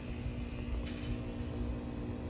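Low rumbling background noise with a faint steady hum, and one light click just under a second in; the parrot makes no call.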